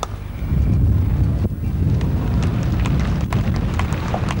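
Wind buffeting an outdoor microphone, a loud low rumble that starts about half a second in, with scattered sharp clicks in the second half.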